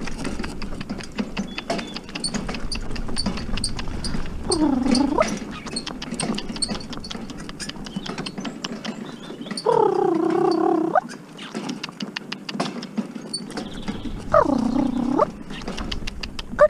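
Pony's hooves on a gravel farm track with a two-wheeled cart rattling, a steady run of irregular clicks and knocks. Three drawn-out pitched calls of about a second each break in, about a third of the way in, near the middle, and near the end.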